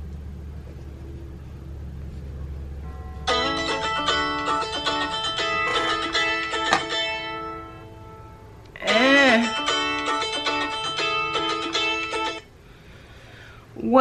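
A smartphone timer alert tone playing as a five-minute timer runs out: a bright, plucked, chiming melody. It plays in two bursts with a short break between them.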